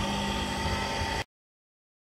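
Single-phase electric motor, freshly rewound with copper wire in place of its original aluminium winding, running unloaded on a test run with a steady hum. The sound cuts off abruptly just over a second in.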